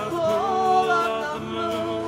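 A woman singing long, held notes that glide between pitches, accompanied by two strummed acoustic guitars, one of them a twelve-string.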